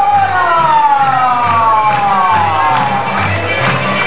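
Loud carnival comparsa parade music: low drum beats keep going under a long held note that slides slowly downward over about three seconds.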